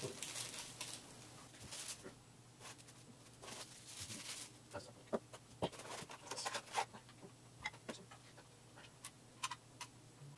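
Scattered small clicks, taps and rustles of hands handling a hard drive enclosure and its parts and wires.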